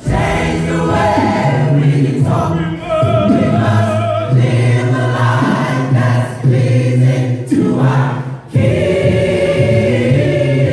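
A large gospel mass choir singing a cappella in parts, voices only with no instruments, in sung phrases separated by brief breaths.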